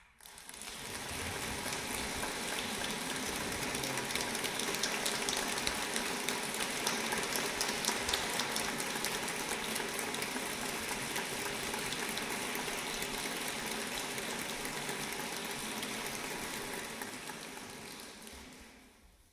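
Audience applauding at the end of a piece: the clapping starts suddenly, holds steady, and fades out near the end.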